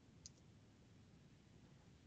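Near silence with one faint click about a quarter of a second in.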